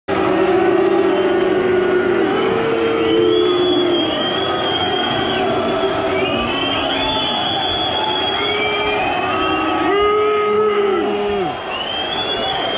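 Football stadium crowd chanting, many voices holding long sung notes that rise and fall away, loud and close around the microphone.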